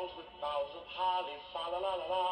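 Miniature light-up toy jukebox playing a song with a sung melody through its small built-in speaker.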